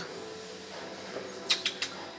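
Four quick, sharp, high-pitched clicks or squeaks about a second and a half in, as a stiff menu card is picked up and handled, over steady restaurant room tone.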